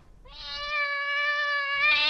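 A cat's meow sound effect: one long meow held at a nearly steady pitch, starting about a third of a second in.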